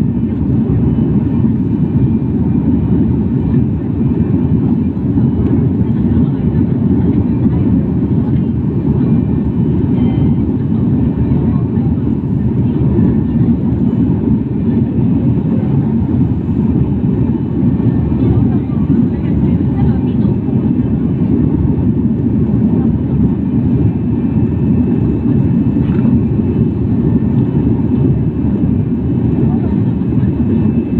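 Steady cabin noise of a jet airliner in flight: the low, even rumble and rush of engines and airflow, unchanging throughout.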